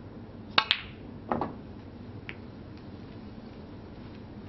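Snooker balls striking: two sharp clicks in quick succession, the cue tip hitting the cue ball and the cue ball hitting a red, then a duller cluster of knocks about half a second later and a faint click after that.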